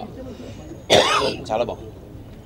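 A man clears his throat once with a harsh cough, about a second in, followed by a brief bit of his voice.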